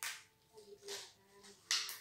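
Hands handling a finger bandage, giving three short crackling rustles, the loudest near the end.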